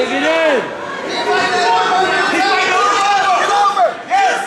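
Several people shouting over one another, overlapping yells of encouragement from coaches and spectators at a wrestling match.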